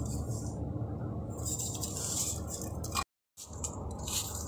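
Steady low background hum with soft rubbing and handling noises as fingers work a new driveshaft oil seal into the gearbox housing. The sound drops out completely for a moment about three seconds in.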